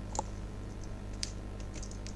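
A few light, sharp clicks from working a computer's mouse and keyboard, three or so spaced across the two seconds, over a steady low hum.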